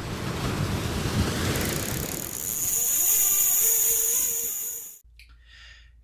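Intro sound effect over the channel logo: a rush of noise that builds and brightens, then cuts off suddenly about five seconds in, leaving a faint low hum of room tone.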